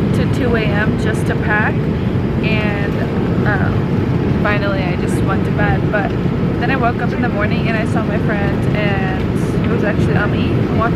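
Steady drone of a jet airliner's cabin in flight, loud and unbroken throughout, with a young woman talking quietly over it.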